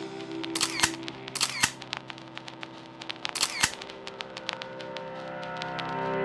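Camera shutter sound effects in a closing theme: three double clicks in the first few seconds, then a run of lighter ticks, over a faint held music tone.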